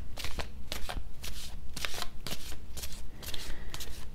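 A tarot deck being shuffled by hand: a continuous run of quick, irregular clicks as the cards are slid and tapped between the hands.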